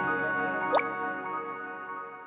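Intro jingle: held chime-like music notes ringing on and slowly fading. About three quarters of a second in comes a single water-drop "bloop" sound effect, a quick upward sweep in pitch.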